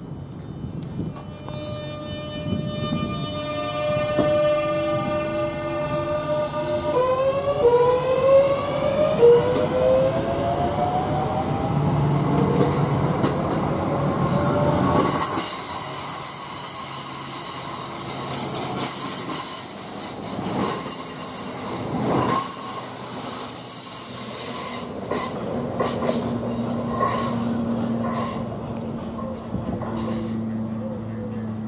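Class 465/9 Networker electric multiple unit pulling away: its electric motor whine climbs in pitch in a series of steps as it accelerates. Then a high steady whine joins a run of sharp wheel clicks over the rail joints as the carriages pass.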